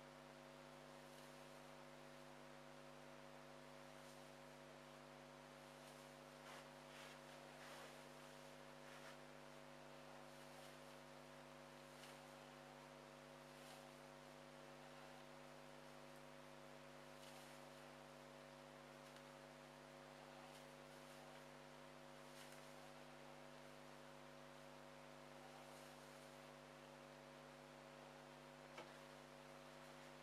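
Near silence: a steady electrical hum, with faint scattered rustles from hands working the hair into a bun and a single small click near the end.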